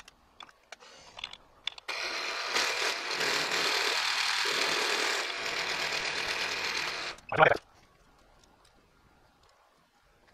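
Milling machine end mill taking a pass across a metal bar: a loud, steady cutting sound that starts about two seconds in and stops suddenly about five seconds later.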